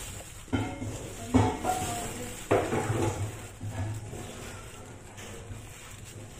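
A kitchen knife cutting through a block of dark chocolate compound against a plate: three sharp crunching cuts in the first half, each with a short scrape, then quieter.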